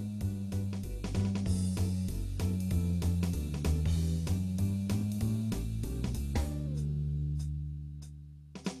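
Lowrey home organ playing back a recorded song through its own speakers: melody and bass on organ voices over a built-in drum rhythm. About six seconds in the drums stop and a held chord fades away.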